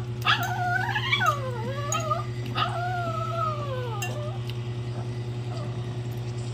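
A pet dog whining in long notes that waver up and down: two drawn-out whines in the first four seconds, then it stops. A fork clinks on a plate a few times early on.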